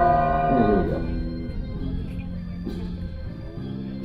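Organ music with held chords that change every second or so, and a short sliding note under a second in.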